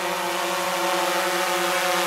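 DJI Mavic 2 Pro quadcopter's propellers and motors buzzing in a steady, pitched whine as it flies in close overhead on return-to-home, growing slightly louder as it nears.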